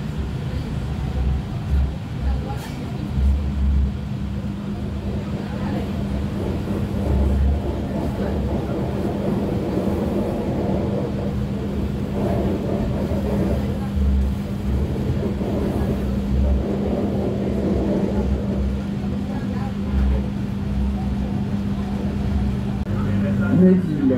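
Running noise inside a moving RER A commuter train: a steady low rumble with a constant hum and irregular low thuds, under a murmur of passenger voices.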